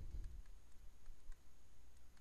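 Faint, scattered clicks and taps of a stylus on a tablet-PC screen during handwriting, over a low steady hum.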